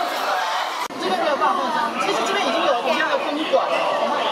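A crowd of people chattering at once, many overlapping voices, with a brief sudden dropout about a second in.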